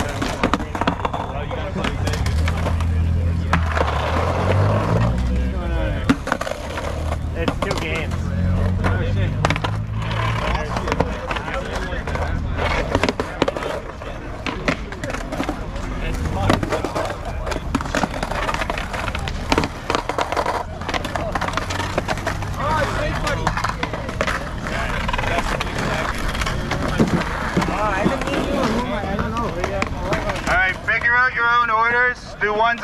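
Skateboards tossed one after another onto asphalt: decks clacking and wheels rolling off across the ground, with a low rumble of rolling wheels.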